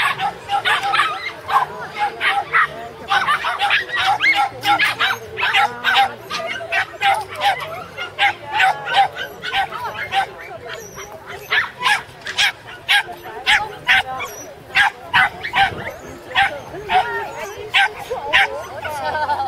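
A border terrier barking and yipping excitedly in quick, repeated bursts, two or three barks a second, without a break.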